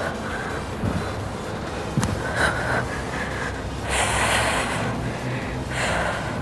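A woman breathing hard after exercise: a few audible breaths, the longest and loudest exhale about four seconds in.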